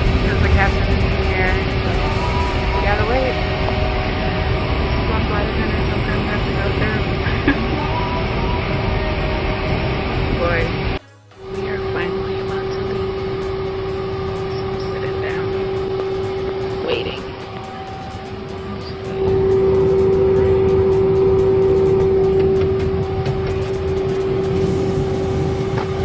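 Airliner cabin noise: a steady hum and a rushing noise. Voices and music sound over it.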